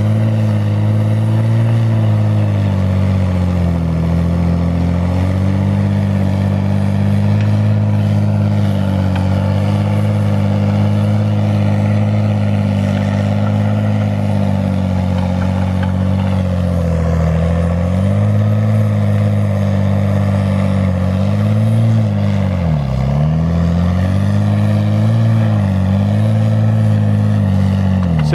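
Tigercat 635D skidder's diesel engine running hard at full throttle while dragging a heavy load of logs uphill. Its pitch sags and recovers several times, most sharply a few seconds from the end, as the engine lugs under the weight.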